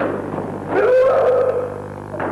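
A karateka's kiai shout during a sparring exchange: one loud, drawn-out cry starting just under a second in and held for under a second. A short knock is heard right at the start.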